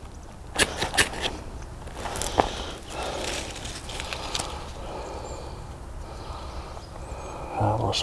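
Hands handling tinder and sticks to light a small wood fire: a few sharp clicks and scrapes in the first few seconds, then soft rustling. A man's voice starts near the end.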